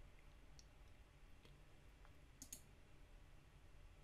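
Faint computer mouse clicks over near-silent room tone: a few scattered single clicks, then a slightly louder quick pair of clicks a little past halfway.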